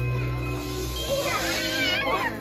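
A baby's high-pitched, wavering squeals and babble, starting about a second in, with music playing.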